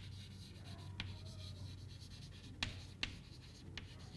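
Chalk writing on a chalkboard: faint scratching of the strokes, broken by a few short sharp ticks as the chalk strikes the board.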